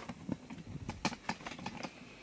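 Handling noise as the camera is picked up and moved: a quick, irregular run of clicks and knocks.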